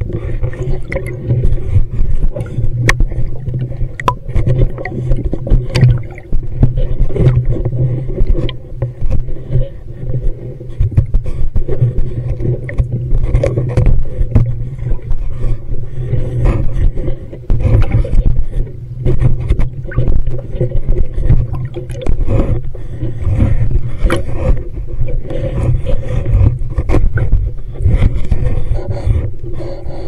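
Underwater handling noise from a dive handcam in its housing: a continuous, uneven low rumble with frequent small knocks and scrapes as the housing rubs and bumps against the diver's gear.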